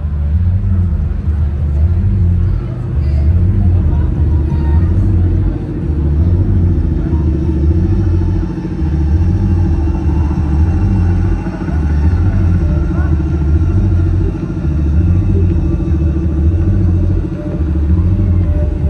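Loud, bass-heavy drone from a concert PA system, its low end pulsing unevenly throughout, with crowd chatter underneath.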